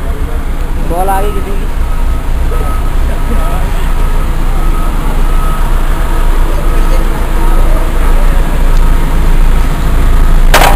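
Heavy tunnelling machinery running with a steady low rumble, growing louder toward the end, with a high warning beeper sounding about twice a second from about a second and a half in.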